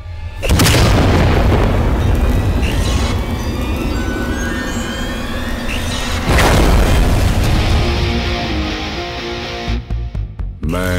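Action film soundtrack: dramatic music with two heavy booming impact hits, the first about half a second in and the second about six seconds in, each dying away slowly.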